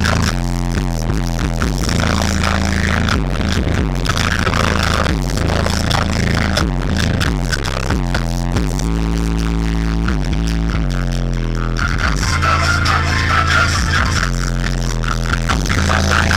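Music played loud through car subwoofers in a trunk enclosure, driven by a Planet Audio amplifier, with heavy bass notes dominating throughout.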